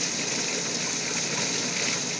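Steady splashing of an artificial garden waterfall, an even rush of water without breaks.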